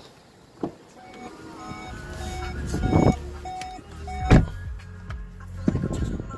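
Car door sequence on a VW Atlas: a latch click, the door opening and someone climbing into the seat, then a solid thump of the door shutting a little over four seconds in. Through the middle, a run of held electronic tones at several pitches sounds in the cabin over a low steady hum.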